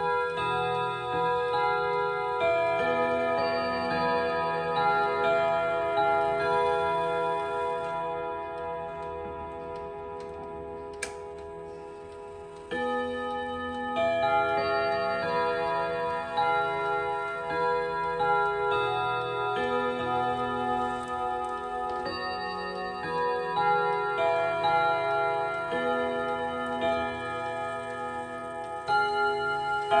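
ODO 36/10 chiming clock's melody movement playing a chime tune, its hammers striking tuned gong rods so each note rings on over the next. The tune fades about 8 seconds in, a single click sounds a few seconds later, and a new run of struck notes starts at about 13 seconds.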